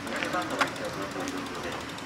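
A faint voice murmuring briefly, over steady outdoor background noise.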